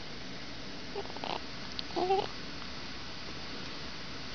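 Newborn baby cooing: a few small pitched coos, the clearest a short wavering one about two seconds in.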